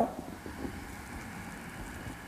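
A long, slow breath drawn in, a soft even hiss of air picked up close to the microphone, following the cue to inhale in a qigong breathing exercise.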